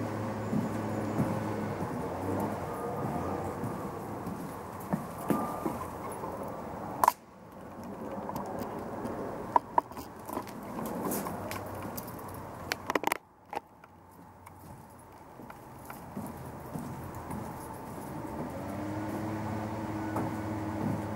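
A motor-driven machine running steadily in the background, its pitch rising near the end, with scattered sharp clicks and knocks over it; the sound cuts out abruptly for a moment twice.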